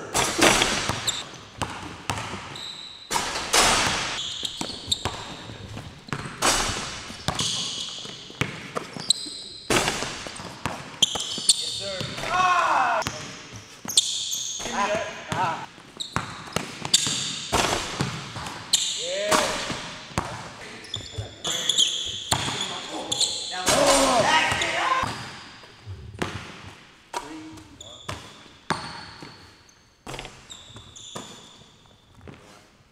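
A basketball bouncing hard and repeatedly on a hardwood gym floor, with short high squeaks between the bounces, in an echoing gym.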